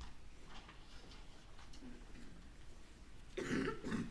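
Low room noise, then a person coughing briefly near the end.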